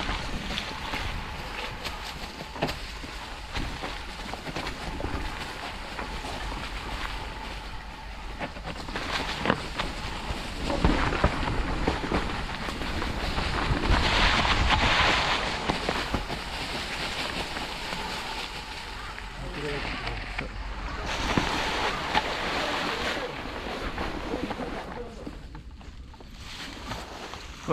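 Mountain bike tyres rolling over dry fallen leaves and dirt, with wind buffeting the microphone as the bikes move; the rustling noise swells louder about halfway through and again near the end.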